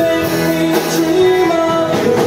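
Live band playing amplified music on electric guitar, acoustic guitar and bass, with sustained held notes running through.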